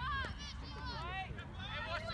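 Several voices shouting and calling out over a soccer field, overlapping high-pitched calls, with a steady low rumble underneath.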